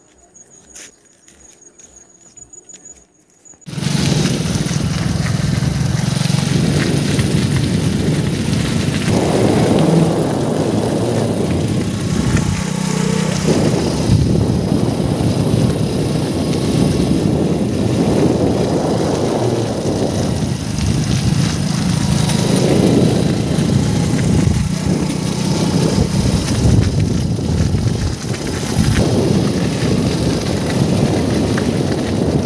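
Faint ticking, then about four seconds in a loud, steady rumbling noise with a low hum starts suddenly and carries on throughout.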